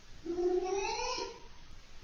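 A cat's single long meow, starting about a quarter second in and lasting about a second, its pitch rising slightly and then falling at the end.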